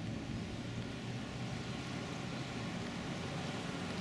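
Steady outdoor street background noise: an even hiss with a low hum underneath and no distinct events.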